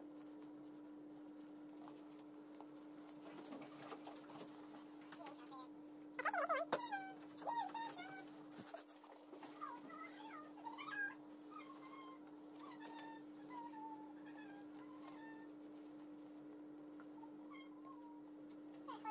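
A man singing off-camera in short, wavering, rising-and-falling phrases, loudest at the start about six seconds in and trailing off by about fifteen seconds. A steady low hum runs underneath.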